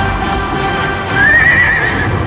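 A film soundtrack played through cinema speakers: a horse whinnies over dramatic music, a single shaky call starting about a second in.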